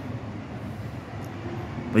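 Steady low background rumble with no distinct events, typical of traffic or machinery noise.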